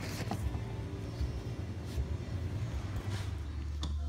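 A low, steady background hum that deepens slightly about three seconds in, with a few faint clicks over it.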